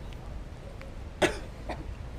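A person coughing once, short and sharp, about a second in, with a fainter second sound about half a second later.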